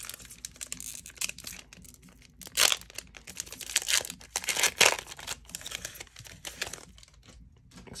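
Foil trading-card pack wrapper torn open by hand and crinkled as the cards are slid out: irregular crackling with louder rips about two and a half and five seconds in.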